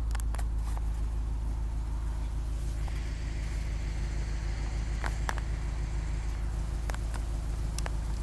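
A vehicle engine idling as a steady low hum, with a few faint clicks about five seconds in and near the end.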